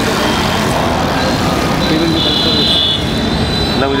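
Busy road traffic noise with motorcycle engines passing close and voices in the crowd. A high steady tone sounds for about a second in the middle.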